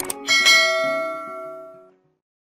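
Two quick clicks, then a single bell ding that rings and fades out over about a second and a half: the sound effect of a subscribe animation's notification bell being clicked.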